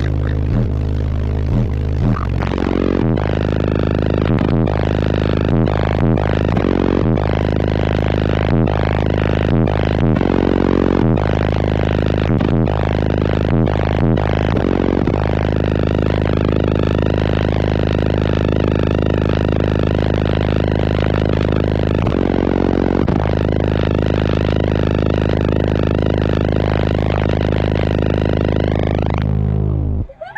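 Bass-heavy music played very loud through a car audio system of six DTX Audio Dreamsicle 18-inch subwoofers, heard from inside the cabin: deep low notes that step and pulse over the first half, then a sustained bass drone that stops abruptly at the end.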